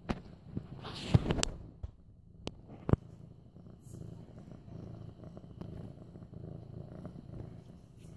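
An eight-month-old medium-haired orange tabby kitten purring steadily while being petted, a continuous low rumble. A few sharp clicks and knocks sound over it in the first three seconds.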